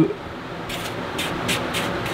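Foam pool-noodle piece being pushed by hand into a gecko enclosure, making a few soft, brief scuffs and rustles as the foam rubs against the enclosure.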